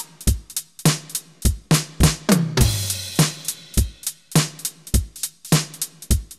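Programmed drum-machine loop from a software step sequencer at 102 BPM, with deep kick hits and closed hi-hats on every sixteenth note. The swing is pushed to nearly 100% against a sixteenth-note reference, so every other sixteenth lands late, giving an uneven long-short shuffle. A longer, hissy hit sounds about two and a half seconds in.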